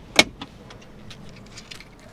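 A single sharp plastic click about a quarter second in, as the pop-out dashboard cup holder of a Volkswagen ID. Buzz is pushed shut and latches, followed by a few faint ticks.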